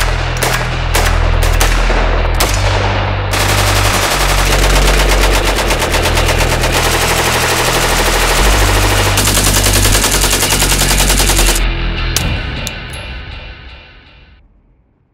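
Rifle gunfire laid over a music track with a heavy bass line. First come separate shots a fraction of a second apart, then about eight seconds of rapid, continuous fire, and the sound fades out near the end.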